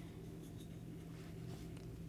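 Faint, soft rustle of a 10 mm crochet hook pulling super bulky acrylic-wool yarn through a stitch, over a steady low hum.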